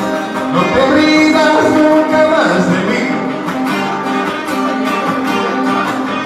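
Live music: a man singing into a microphone to his own guitar playing.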